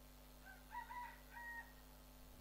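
A faint, distant animal call: a short run of pitched notes about half a second in, ending in a held note, over a steady low electrical hum.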